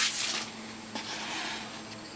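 Foil trading-card pack wrapper crinkling briefly at the start and fading out, then quiet handling of cards with a faint tap about a second in.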